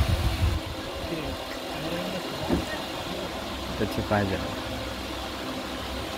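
Steady low mechanical hum, with a voice speaking a few words about two thirds of the way in.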